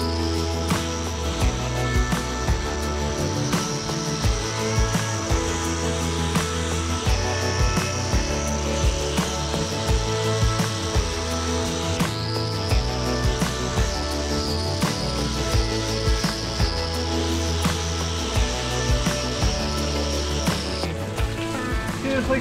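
Angle grinder with a hoof-trimming disc running on a cow's claws: a steady high whine that spins up at the start, dips and picks up again about halfway, and cuts off near the end, during a routine trim to level the weight between the two claws. Background music with a steady beat plays underneath.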